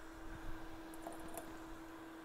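Quiet workbench room tone: a steady low hum, with a few faint light clicks about a second in.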